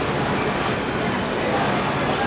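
Steady, loud din of industrial sewing machines running on a garment factory floor.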